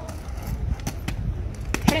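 Inline skate wheels rolling over stone pavers with a steady low rumble, broken by a few sharp clacks of the skates striking the stone step, the loudest near the end.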